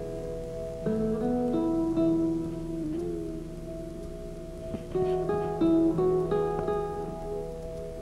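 Background music: a slow guitar melody of plucked single notes that ring on, with a few held notes in the middle.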